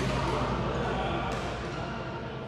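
Badminton hall ambience: voices talking in a large, echoing hall over a steady low hum, with one sharp knock about a second and a half in. The whole gets steadily quieter toward the end.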